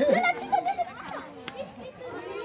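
Children's voices chattering and calling, loudest in the first second and fading after, with a single short click about a second and a half in.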